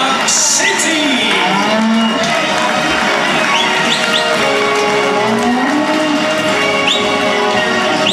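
Hereford cattle mooing, several long calls that rise and fall in pitch, over background music.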